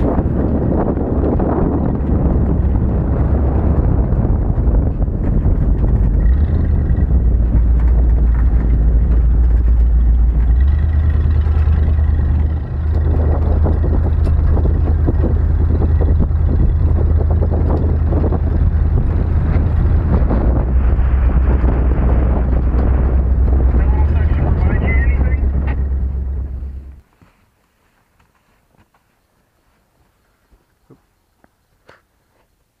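A 1977 Jeep Cherokee driving on a dirt trail, heard from a camera mounted on its outside: a steady low rumble of engine and road noise with wind on the microphone. Near the end the sound cuts off suddenly, leaving near quiet with a few faint clicks.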